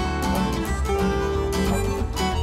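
Instrumental background music with plucked strings and a long held note from about halfway through.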